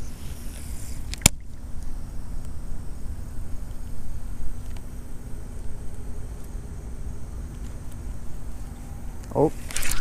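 Outdoor ambience: a steady low rumble with a single sharp click about a second in, then a man's short exclamation near the end.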